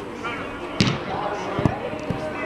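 Two sharp thuds of a football being kicked, the first about a second in and the second just under a second later, over background voices.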